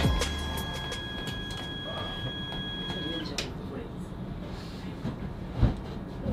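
Electric motor of a reclining train seat whining steadily as the seat lowers into a flat bed, cutting off with a click about three seconds in. A brief voice, likely a laugh, comes near the end.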